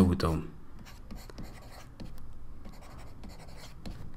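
Pen-stylus scratching on a writing tablet in short, quick strokes as handwriting is written. The tail of a spoken word sounds at the very start.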